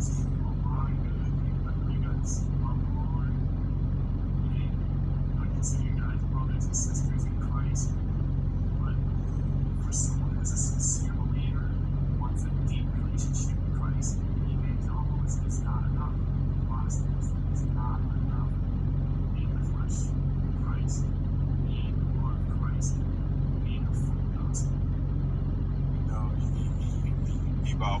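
Faint, muffled speech from a phone's speaker playing a video, over a steady low hum.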